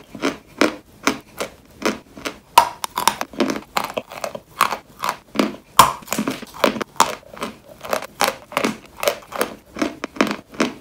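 Crunching of a dry, crisp white dessert being bitten and chewed: a steady run of short, sharp crunches, about two to three a second, with a louder bite about six seconds in.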